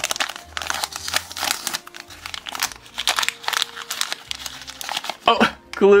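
Crinkling of a small sealed plastic blind-bag wrapper as it is pulled open by hand, a rapid run of crackles.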